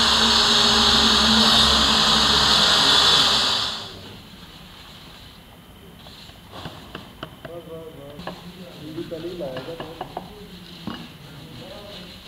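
Handheld electric tile cutter cutting through a ceramic wall tile: a loud, steady whine with a high gritty hiss that stops suddenly about four seconds in. After it come a few light knocks as the cut tile is handled.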